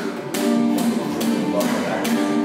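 Acoustic guitar strummed in a steady rhythm, about two strokes a second, accompanying a sung ballad between lines.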